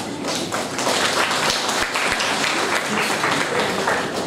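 Audience applauding, many hands clapping at once; it swells about half a second in and keeps going.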